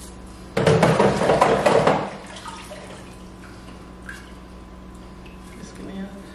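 Water splashing into a kitchen sink for about a second and a half as hookah parts are rinsed, followed by a few faint drips and small knocks.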